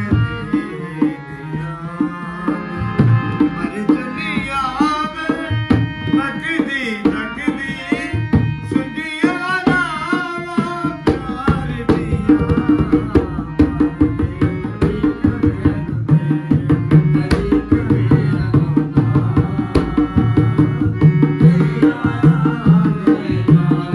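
Harmonium and dholak playing Sufi kalam accompaniment. The drum keeps a steady beat that grows louder about halfway through, and a voice sings ornamented, wavering phrases in the first half.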